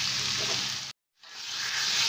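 Diced carrots sizzling in hot oil in a pan as they are stirred with a spatula. The sizzle fades and cuts to silence about a second in, then fades back in and grows with corn kernels now frying among the carrots.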